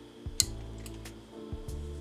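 Soft background music with steady held notes, and a single light click about half a second in.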